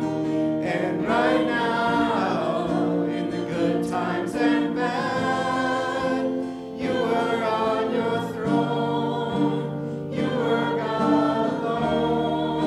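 Live church worship band singing: women's and a man's voices in harmony over acoustic guitar, with long held notes and the chord changing near the end.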